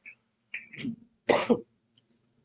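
A man coughing and clearing his throat: a few short rough bursts, the loudest about a second and a half in.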